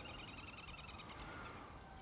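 Faint outdoor birdsong: a fast, even trill of repeated high notes that fades out about a second in, followed by a few short, high chirps.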